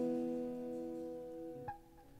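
Guitar's final chord ringing out and fading, with a short click near the end after which most of the chord stops.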